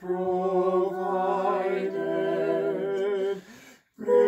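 Unaccompanied voices singing a hymn in close harmony, holding a long chord at the end of a line, which fades out about three and a half seconds in, leaving a brief breath pause.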